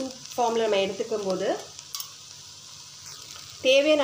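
Chopped mixed vegetables frying in butter in a nonstick pan, a quiet steady sizzle, with a woman's voice speaking briefly about half a second in and again near the end.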